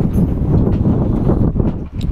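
Wind buffeting the camera's microphone: a loud, irregular low rumble that dips briefly near the end.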